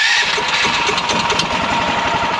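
Predator 420 single-cylinder four-stroke engine running steadily just after being started on the key with its new electric start. It makes a loud, fast, even pulsing.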